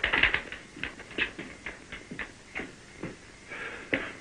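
A dog's paws and a man's boots stepping on wooden floorboards: a series of light, irregular taps.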